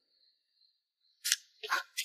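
Stiff paper invitation card rustling as it is drawn out of its envelope: a couple of short, crisp rustles in the second half.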